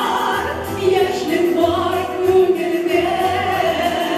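Two women singing a Tatar song as a duet into microphones, with sustained, wavering notes, over an instrumental accompaniment with a regular low bass pulse.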